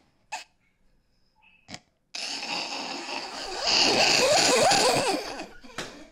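Men bursting into loud laughter about two seconds in, loudest in the middle and fading near the end.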